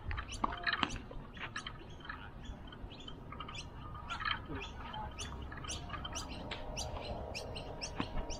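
Birds chirping: many short, high calls in quick succession, over a faint low rumble.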